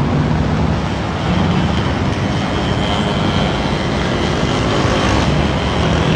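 Loud, steady street traffic: cars driving past close by, a dense wash of engine and tyre noise.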